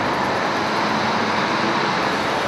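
Steady airport background noise: an even rushing hum with no distinct events in it.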